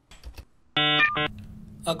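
Electronic computer bleeps as a sound effect: two short, loud, buzzy tones about three quarters of a second in, the first about a quarter second long and the second shorter, followed by a low steady hum.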